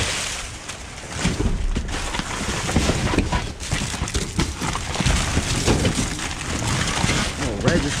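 Plastic trash bags and cardboard boxes rustling and crinkling as gloved hands shove them aside, with scattered knocks.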